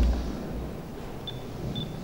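A low thump from a handheld microphone being handled, then steady room tone in a pause between speech, with two faint short high beeps about halfway through.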